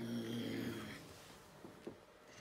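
A man's low, drawn-out vocal hum lasting under a second, followed by two soft knocks near the end.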